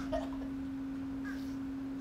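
Steady low-pitched hum on a single unchanging tone, with a faint short sound just after the start.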